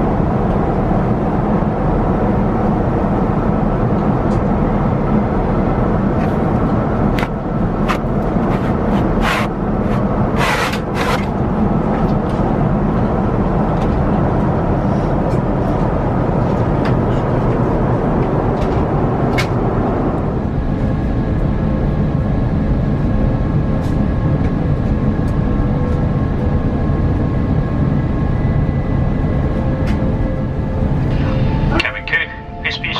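Steady roar of cabin noise inside an Airbus A350 in flight, from its Rolls-Royce Trent XWB engines and the airflow. A few sharp clicks come near the middle, and about two-thirds of the way through a few steady whining tones join the roar.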